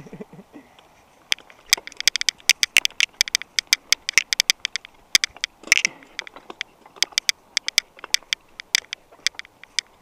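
Mountain bike rattling down a rocky, loose-surfaced descent: a rapid, irregular clatter of sharp clicks and knocks as the bike jolts over stones and gravel. It starts about a second in.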